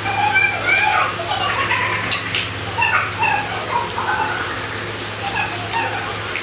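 A dog whimpering in short, high-pitched whines over a steady low hum, with a couple of sharp clicks about two seconds in.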